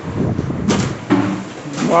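A man's voice talking, with a short whoosh about a third of a second in, over low clatter in the first moment.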